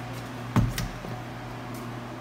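A refrigerator door pulled open, with a sharp knock about half a second in and a lighter click just after, over a steady low hum.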